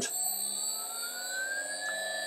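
Small electric motor on a motor inverter speeding up from about 800 to 1500 rpm. Its whine rises smoothly in pitch and levels off near the end as it reaches full speed.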